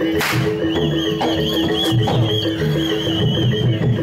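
Live traditional Indonesian ensemble music: a steady drum rhythm under two held low notes and a high, wavering melody line. A sharp crack sounds just after the start.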